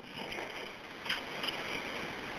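Steady hiss and background noise on a recorded 911 telephone call, with no voice for a moment.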